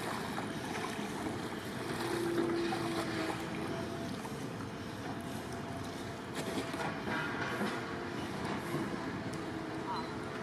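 Double-bladed kayak paddle dipping and splashing in calm water beside a surfski, with a few short splashes in the second half over a steady background hiss.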